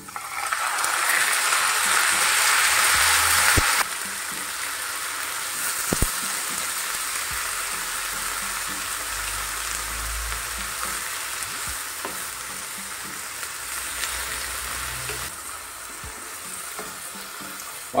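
Raw beef mince sizzling as it goes into a hot oiled pan of sautéed onions and tomato, loudest for the first few seconds, then a steadier, quieter sizzle as it is stirred in. A wooden spatula knocks lightly against the pan a couple of times.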